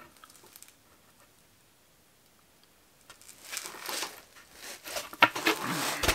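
Cut pieces of white laminated chipboard being handled and laid down: soft scraping and rustling with a few light clicks, starting about three seconds in.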